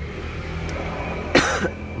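A man coughs once, short and loud, about a second and a half in, over a steady low hum.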